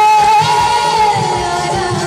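A woman singing one long held note into a stage microphone, the note bending up briefly and then slowly falling, over a live band of drum kit, keyboard and electric guitar.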